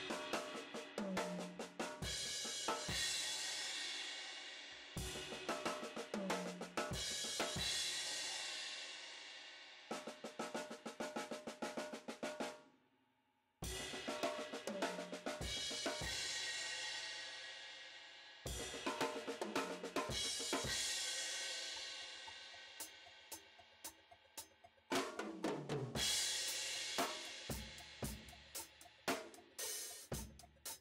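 Drum kit played with sticks: an inverted paradiddle variation spread over snare drum, bass drum, hi-hat and several cymbals, with cymbal crashes left ringing and dying away between runs of strokes. It stops for about a second near the middle, then starts again.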